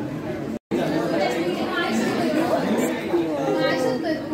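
Indistinct chatter of several students talking at once in a lab room, with no single clear voice. The sound cuts out completely for a moment about half a second in, then the chatter resumes a little louder.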